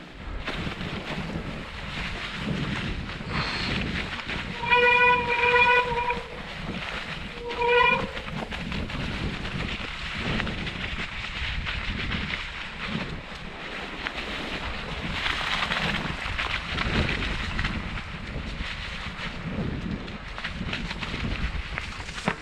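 Mountain-bike disc brakes squealing in two steady pitched bursts, about a second and a half long, then a shorter one, during a descent on a snowy trail. Underneath runs the constant rumble of the bike rolling over snow and ruts, with wind on the microphone.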